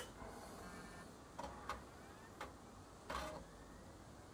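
Faint, steady whir of a running PC's cooling fans, among them the graphics card's aftermarket cooler fan, with a few soft clicks.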